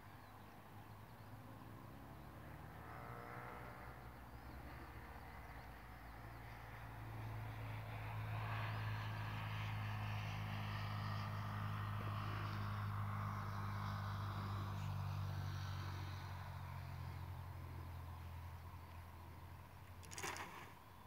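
A distant engine droning steadily, growing louder about seven seconds in and fading again toward the end.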